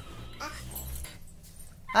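A child's faint whimper, brief and about half a second in, over a low hum.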